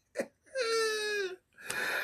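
A man's voice giving a short yelp, then a drawn-out high falsetto wail of about a second that slides slightly down in pitch, followed by a breathy sound.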